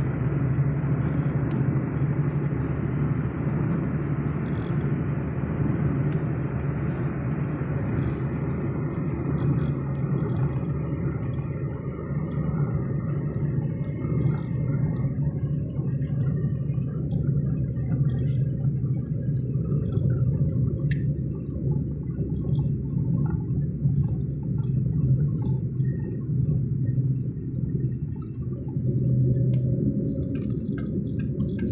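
Steady low rumble of a car's engine and tyres on the road, heard inside the moving car's cabin. The higher road hiss dies away about halfway through, leaving mostly the low drone.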